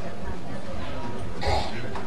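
One short, sharp burst of breath from a person about one and a half seconds in, over steady background hiss.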